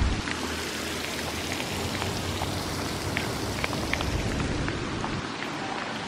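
A steady, rain-like hiss of splashing or running water, with scattered short high ticks through it.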